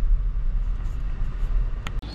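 Car engine running with a steady low rumble, heard from inside the cabin, with one sharp click near the end.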